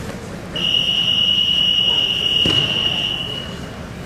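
An electronic match-timer buzzer sounding one steady, high-pitched tone for about three seconds over the hubbub of a gym hall, with a single thump about two and a half seconds in.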